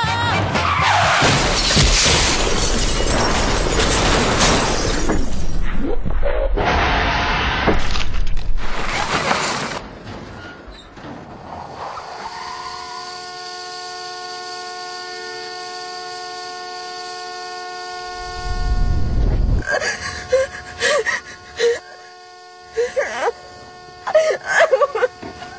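Car crash: about ten seconds of loud impact noise with glass shattering. It gives way to a quieter steady held tone, a low thump, and short broken sounds near the end.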